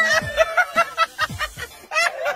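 A woman's high shriek that breaks off just after the start into a quick run of laughter.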